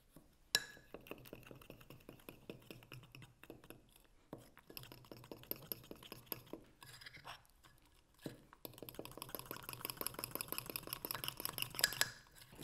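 A metal utensil whisking thick cake batter in a ceramic jug, rapidly clinking and scraping against the inside of the jug. The clicking pauses briefly about four and eight seconds in and is busier over the last few seconds.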